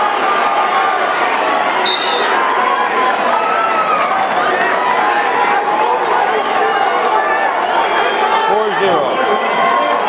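Gymnasium crowd of wrestling spectators talking and shouting over one another in a steady din, with a short high beep about two seconds in.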